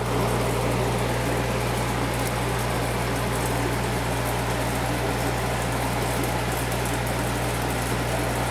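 Aquarium air pump and filtration running: a steady electric hum with an even hiss over it, unchanging throughout.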